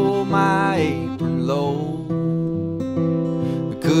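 Acoustic guitar accompaniment to a slow folk song, with a man's singing voice sliding down in pitch twice in the first two seconds.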